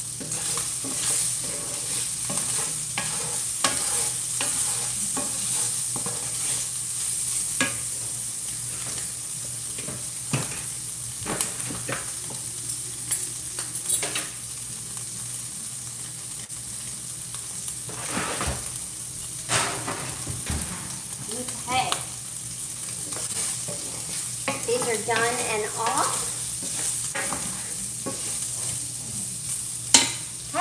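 Sliced link sausage sizzling in a cast-iron skillet with a steady high hiss, while a spatula stirs it, knocking and scraping against the pan.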